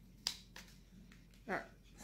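A sharp click from small objects being handled, followed by two fainter clicks.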